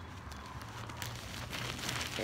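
Fabric rustling and crinkling as a garment is handled and lifted, with scattered small crackles over a low steady hum.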